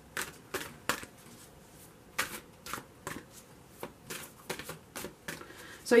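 A tarot deck being shuffled by hand: about a dozen short, crisp card slaps at irregular intervals.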